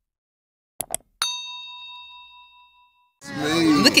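Subscribe-button animation sound effect: two quick clicks just under a second in, then a single bright notification-bell ding that rings out and fades over about two seconds. A voice cuts in near the end.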